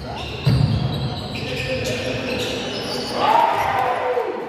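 Basketball game in a sports hall: the ball thudding on the hardwood court, loudest about half a second in, with players' voices and a shout near the end, all echoing in the hall.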